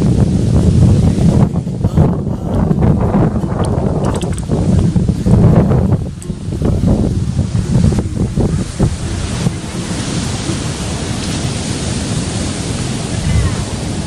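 Wind buffeting the microphone, a loud low rumble over the wash of surf breaking on the beach.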